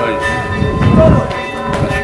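Church bells ringing on and on, their overlapping tones hanging steadily in the air, under a man's speaking voice.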